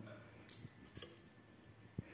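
Near quiet, broken by a brief faint rustle about half a second in and a couple of small clicks later on.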